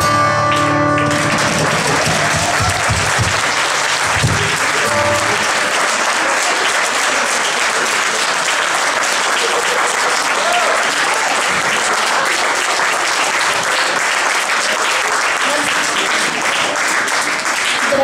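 An acoustic guitar's last chord rings out for about the first second, then the audience applauds steadily for the rest of the time.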